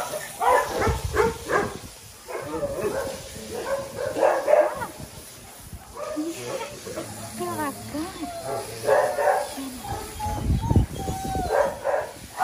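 Dogs barking and whining, with short calls that bend up and down in pitch, clustered in the middle of the stretch.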